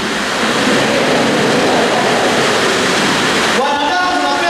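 A steady, even rushing noise with no clear pattern, as loud as the speech around it. A man's voice comes back near the end.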